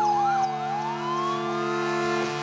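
Emergency-vehicle sirens sounding together, from an ambulance and a fire engine. One is a fast yelp sweeping up and down about four times a second; the other is a slow wail that falls and then rises again, over a steady low drone of several tones.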